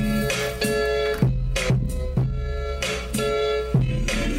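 Hip-hop beat playing back: a looped melodic sample with held tones over kick and snare hits about twice a second, with a deep 808 bass underneath.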